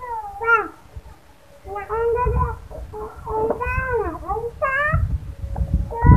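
A child's high-pitched voice making drawn-out, wavering whining cries, several in a row, with a short pause about a second in.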